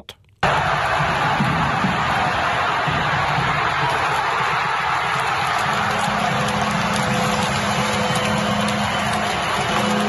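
Ice hockey arena crowd cheering at a steady level with music over it, after a home-team goal.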